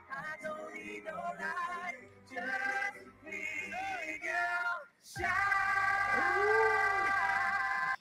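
Male pop vocalists singing live into microphones over backing music, in short phrases, then a long held note after a brief break about five seconds in.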